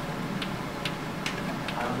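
Light, sharp ticking clicks, about two or three a second, over a low murmur of voices in the room.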